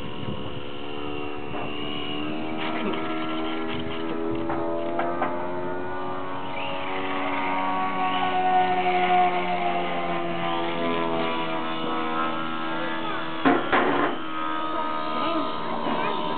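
Electric motor and propeller of a radio-controlled foam model airplane whining steadily, its pitch drifting slowly up and down. A short rattle comes near the end.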